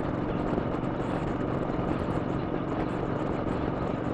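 A 2007 Triumph America's 865cc parallel-twin engine running steadily while cruising, with wind and road noise, heard through a microphone in the rider's helmet.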